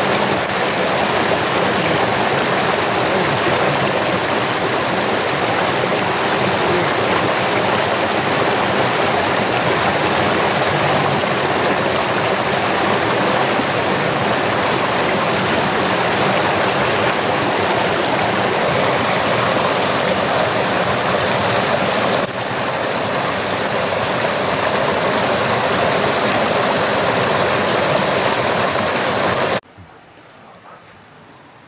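Mountain stream rushing over rocks and a small cascade: a loud, steady water noise. It cuts off suddenly just before the end.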